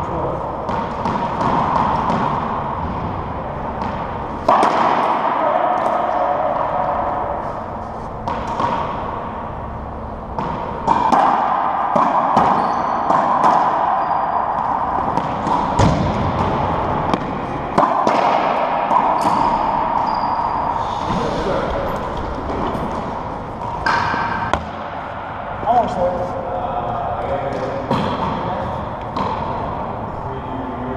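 Racquetball being played in an enclosed court: sharp knocks of the rubber ball off racquets, walls and the hardwood floor at irregular intervals, each echoing in the hard-walled court, with indistinct voices between.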